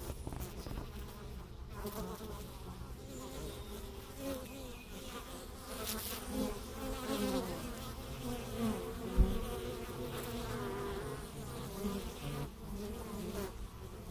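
Honey bees buzzing close by as they fly in and out of the hive entrance, the buzz wavering and gliding in pitch as individual bees pass. A single brief low bump sounds about two-thirds of the way through.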